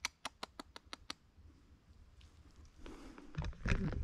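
Camera handling noise: a quick run of about seven sharp clicks in the first second, then rustling and a low bump near the end as the camera is turned around.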